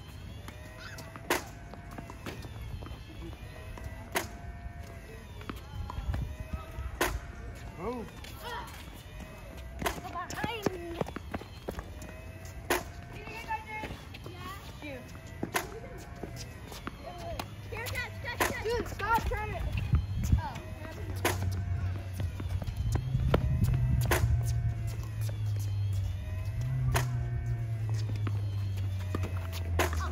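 Tennis balls being struck with rackets, sharp knocks recurring every one and a half to three seconds, with children's voices in the background. A low hum builds up in the second half and becomes the loudest sound.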